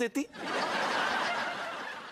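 Sitcom laugh track: a swell of recorded audience laughter that rises about a third of a second in, peaks, and slowly fades.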